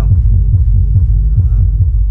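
A GS-15 15-inch powered subwoofer, driven by its 900 W class D amplifier, playing the bass of music. It gives a loud, fast run of deep bass thumps with almost nothing above the low end.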